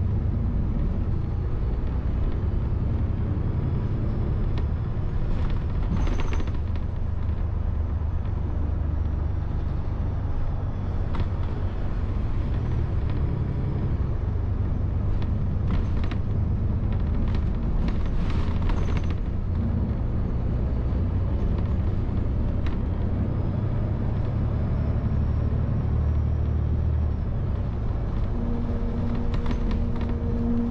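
Steady low engine and road rumble heard from inside a moving city bus, with a few short sharp clicks or rattles scattered through it and a brief steady tone near the end.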